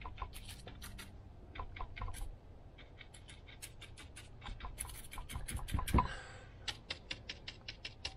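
Small paintbrush dabbing and scratching paint onto rough, weathered driftwood along a strip of masking tape: a faint run of quick, irregular ticks and scrapes, with one louder knock about six seconds in.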